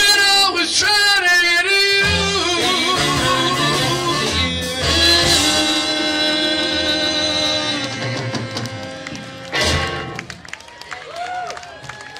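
Live doo-wop vocal group singing close harmony over a rock and roll band with electric guitar and drums. The voices hold a long closing chord that ends on a sharp drum hit about ten seconds in, after which it goes quieter with voices.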